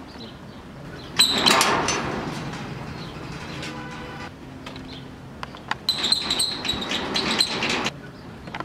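Metal gate being worked, scraping and rattling twice: a sudden loud scrape about a second in that fades over a couple of seconds, then a rougher, rattling scrape with a high metallic ring near the end that cuts off suddenly.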